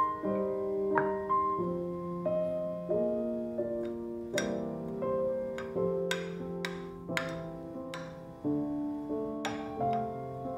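Background piano music: a slow, gentle melody of held notes, with a few brighter, sharper note strikes in the second half.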